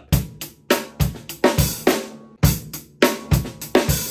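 Acoustic drum kit groove played with the sticks gripped deliberately tight: bass drum, snare and cymbal hits sounding choked and short, without much resonance.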